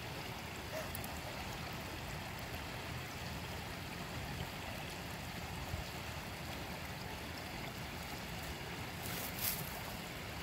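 Steady rush of water at the quarry's edge, an even hiss with no distinct events. A short crackle comes near the end.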